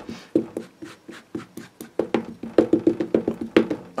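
Memento ink pad dabbed repeatedly onto a rubber stamp on an acrylic block, a run of quick light taps that speeds up to about five a second in the second half. The pad is nearly dried out, so it takes many dabs to load the stamp.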